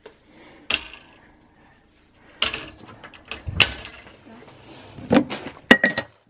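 Scattered knocks and rustling from a toddler rummaging among packets and shelves in a pantry, with the loudest knock about three and a half seconds in.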